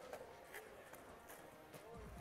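Near silence: a few faint, irregular clicks from a skateboard rolling on concrete, with faint voices.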